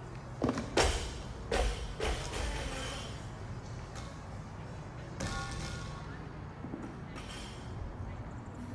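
A few heavy thumps in quick succession in the first two seconds, then a softer knock about five seconds in.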